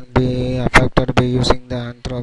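Only speech: a person talking, with no other sound standing out.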